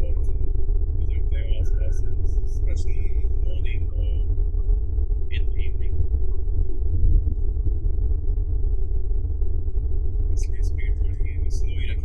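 Steady low rumble of road and engine noise inside a car cruising on a highway, under background music with sustained tones and short higher sounds that thin out mid-way and return near the end.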